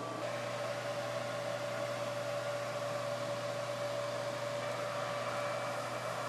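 A 1960s GE portable soft-bonnet hair dryer running: the blower motor in its case sends air through the hose into the bonnet, giving a steady hum with a held mid-pitched whine.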